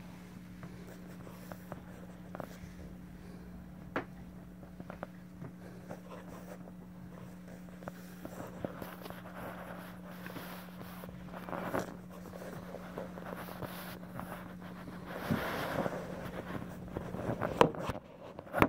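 Faint, steady electrical hum with scattered clicks and rustling from the phone being handled; the hum stops about three seconds before the end. No keyboard notes are played.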